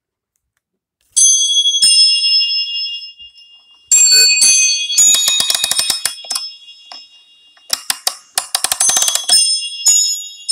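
Bells ringing: high sustained chime notes start suddenly about a second in, and twice later come runs of quick jingling like shaken sleigh bells.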